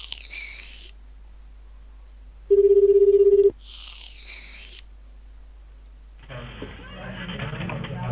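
Outgoing VoIP call ringing out: a single ring of the ringback tone, a steady buzzing tone about a second long, comes about two and a half seconds in, with two soft bursts of hiss around it. About six seconds in the call is answered and a murmur of background voices comes down the line.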